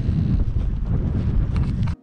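Airflow buffeting the microphone of a paraglider pilot in flight: a steady, loud low rumble of wind that cuts off suddenly near the end.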